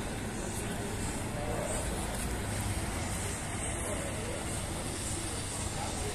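Steady outdoor background noise, a low even rumble, with faint distant voices now and then.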